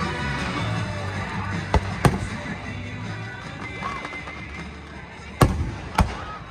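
Fireworks bursting overhead: two sharp bangs about two seconds in and two more near the end, with music playing throughout.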